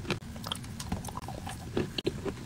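Close-miked chewing of dry chalk: soft, irregular crunches and clicks, with a sharper crunch near the end.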